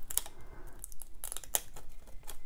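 Thin brushed-metallic self-adhesive vinyl being peeled off its paper backing, the waste film crinkling with small irregular crackles and ticks as it pulls away.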